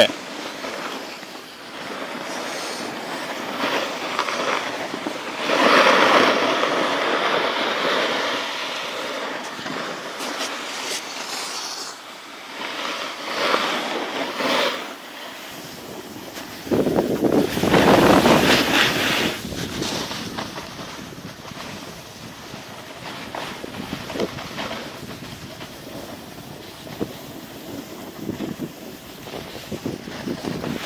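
Wind rushing over a phone's microphone, mixed with the hiss of sliding over packed snow while moving down a ski slope, swelling louder twice.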